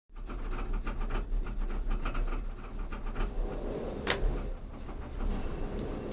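Inside a moving gondola cabin: a steady low rumble with irregular clacks and rattles, and one sharp knock about four seconds in.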